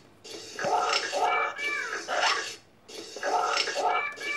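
Recorded lemur calls playing back: runs of pitched, wailing notes, with a short break about two and a half seconds in before the calls resume.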